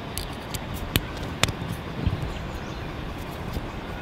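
Screwdriver turning a small screw out of the side of a plastic backup-camera housing: a few light clicks, two sharper ones about a second and a second and a half in, over a steady background hiss.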